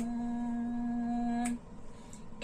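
A woman's voice holding one steady note of an unaccompanied hymn for about a second and a half, then breaking off with a short click.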